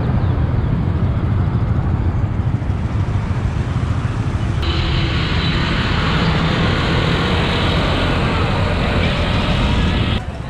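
Riding on a motorbike through city traffic: a steady, loud rush of wind over the microphone with engine and road noise. The sound turns brighter and hissier abruptly about halfway through.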